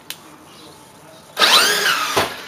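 Electric motor of a 4S-powered RC monster truck whining as it is hit with throttle about one and a half seconds in: a loud whine that rises sharply in pitch and falls back as the truck launches off the porch.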